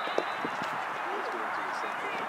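Outdoor soccer field sound: distant voices of players and spectators calling out, with a single sharp thump shortly after the start.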